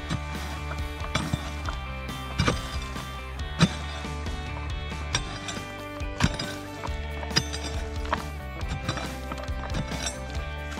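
Background music playing under a pick mattock striking loose, broken rock and dirt, about one blow a second, the hardest blow near the middle.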